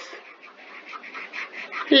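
Low steady background hiss with a few faint light clicks. A voice starts a word right at the end.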